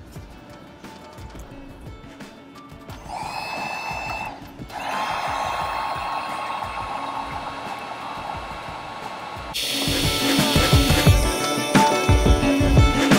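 Electric heat gun blowing with a steady whine as it shrinks heat-shrink butt connectors on wire splices. It starts about three seconds in, cuts out briefly a second later, then runs steadily; background music comes in near the end.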